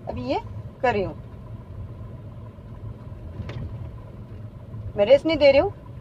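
Tata Tigor's three-cylinder engine running steadily with a low rumble, heard inside the cabin. A single sharp click comes about three and a half seconds in.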